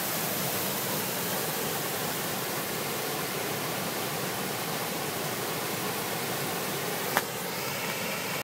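Water rushing through the sluice openings of a small stone dam and pouring into a foaming pool below, a steady rush. A brief click about seven seconds in.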